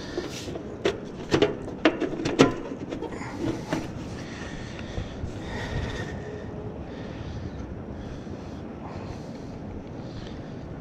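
Air-conditioner condenser unit running, its fan and compressor making a steady whooshing hum. A few sharp knocks in the first couple of seconds as a hand handles the sheet-metal cabinet.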